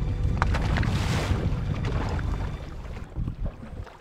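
Boat engine rumbling at low speed under wind buffeting the microphone, with rushing water and air loudest about a second in, then easing off.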